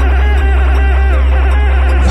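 Electronic background music with a heavy, steady bass and repeating notes that slide down in pitch.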